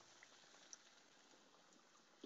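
Very faint sizzle of battered cod deep-frying in a pan of hot oil, with a couple of tiny pops.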